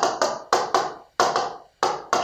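A pen stylus tapping and clicking against the hard glass of a touchscreen whiteboard while writing: a string of sharp, uneven taps, about seven or eight in two seconds.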